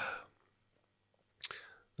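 A pause in a man's speech into a microphone: a drawn-out hesitant "a" trails off, near silence follows, and a brief breath comes about a second and a half in, just before he speaks again.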